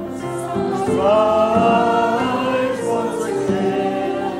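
Church congregation singing a hymn together.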